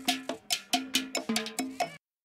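Cowbell and hand percussion separated out of a funk band recording, struck in a quick repeating pattern of several hits a second, each hit ringing briefly.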